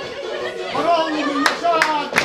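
A group of people clapping their hands together in time, about three claps a second, starting about a second and a half in. Voices are calling out over the claps.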